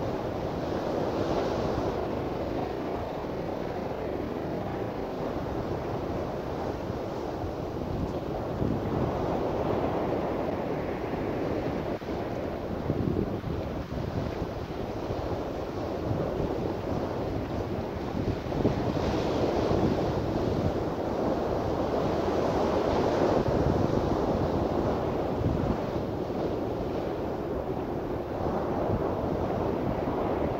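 Wind buffeting the microphone: a steady rushing noise that swells and eases every few seconds.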